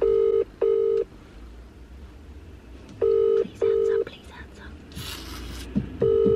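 A mobile phone's outgoing-call ringing tone, heard through the phone's loudspeaker: the British double ring, two short beeps then a pause, sounding twice while the call waits to be answered.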